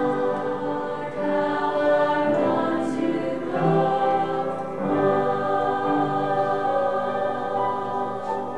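Mixed choir of men's and women's voices singing a Christmas cantata in long held phrases, with a few short breaks between phrases.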